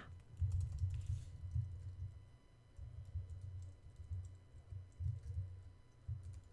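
Typing on a computer keyboard: irregular keystrokes, mostly heard as dull low thuds.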